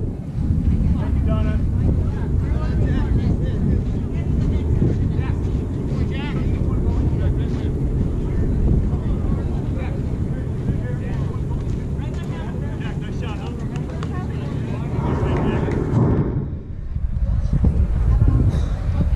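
Wind buffeting the camera's microphone with a steady low rumble, easing briefly near the end, with faint voices of players calling on the softball field.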